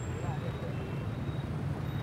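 Quiet outdoor background ambience in a pause between lines of dialogue: a steady low rumble with a faint even hiss, and nothing standing out.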